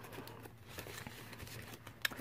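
Faint rustling and small clicks of paper: banknotes being handled and tucked into a paper cash envelope, and the page of a ring-binder budget planner being turned.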